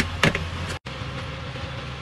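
Steady kitchen background noise, a rushing sound with a low hum, under a pot of soup simmering on the stove. There are two short louder sounds at the very start, and a momentary dropout just before the middle.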